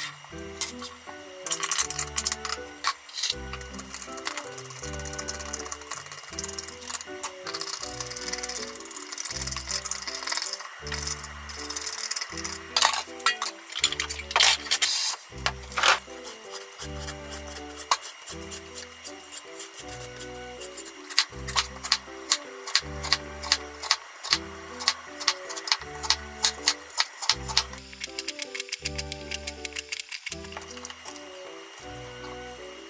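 Background music with a steady bass beat, over kitchen sounds: a hand peeler scraping the skin off a lotus root, then a knife slicing the lotus root into rounds on a wooden cutting board, with quick regular cuts near the end.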